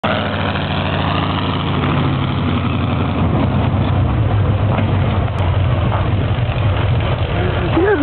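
Monster truck engine idling, a loud, steady low rumble.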